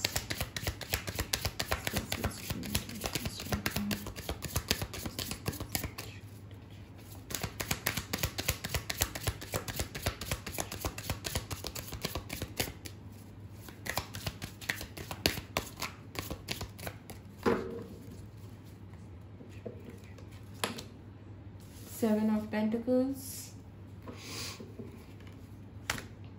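A deck of tarot cards being shuffled by hand: two long runs of quick, dense card-edge clicks, then slower, scattered snaps. A short bit of voice comes near the end.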